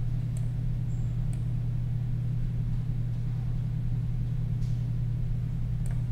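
Steady low hum in the background, with a couple of faint clicks about half a second and a second and a half in.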